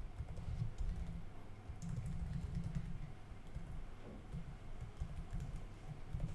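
Computer keyboard typing: light, scattered keystrokes, quiet.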